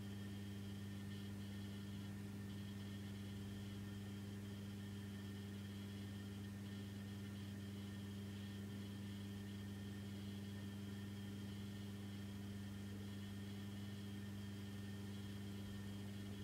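Steady low electrical hum with faint hiss: the background noise of the recording between narrated headlines, unchanging throughout.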